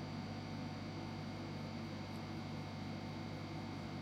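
Steady low hum over a faint even hiss, with no distinct event.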